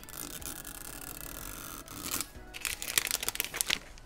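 Plastic wrapper being peeled off a blind-box capsule: a steady ripping hiss for about two seconds, then a run of quick crinkles and crackles as it comes free.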